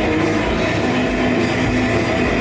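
Live punk band playing loud, with electric guitar and drums in a dense, unbroken wall of sound.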